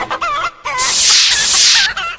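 Chicken clucking: a run of short, wavering calls, broken twice by loud hissing bursts of about half a second each.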